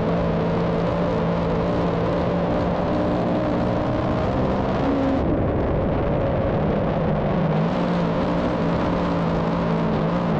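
Big-block dirt modified race car's engine heard from the in-car camera, running hard at racing speed over dense road and wind noise. The pitch eases briefly about five seconds in and again past seven seconds, then climbs back.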